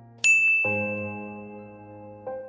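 A single bright ding from a notification-bell sound effect, struck about a quarter-second in and ringing on, fading slowly. Sustained background music chords continue underneath.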